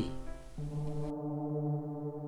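Music: a low, steady brass chord that starts about half a second in and is held without change.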